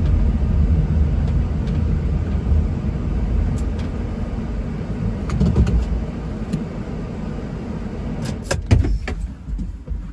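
Low rumble of road and engine noise heard inside a vehicle's cabin while driving. It slowly gets quieter as the vehicle comes to a stop. A few sharp clicks and knocks come near the end.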